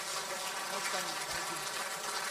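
Audience applause in a large hall: a steady, fairly faint wash of clapping with some voices mixed in.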